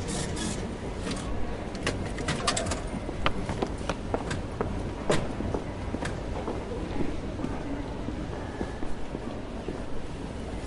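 Railway station ambience: a steady low rumble of the station with scattered sharp clicks and knocks, thickest in the first half.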